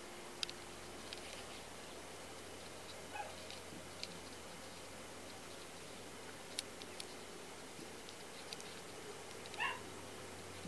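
Two faint, short animal calls, one about three seconds in and a louder one near the end, over a steady low hiss with scattered small clicks.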